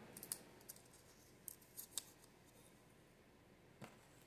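Near silence broken by a few faint, short clicks and rustles of small paper sticky notes being picked up and handled by fingers.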